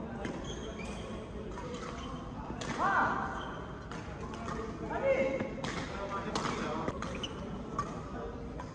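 Badminton rally: several sharp racket hits on the shuttlecock, with court shoes squeaking on the court mat, loudest about three and five seconds in, over background voices.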